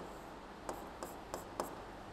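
Faint scratching and a few short taps of a pen drawing on a board, the taps falling in the second half.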